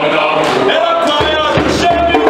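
Mixed youth choir singing a South African folk song, with a few low thumps in the second half.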